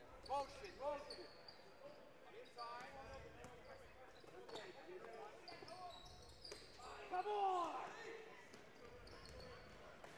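Basketball game sounds on a gym floor: sneakers squeaking, the ball bouncing, and short shouted calls. Two brief shouts come near the start, and the loudest, a longer falling call, comes about seven seconds in.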